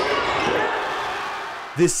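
Gym sound of a basketball game: crowd and court noise that fades away over about a second and a half, with a voice starting near the end.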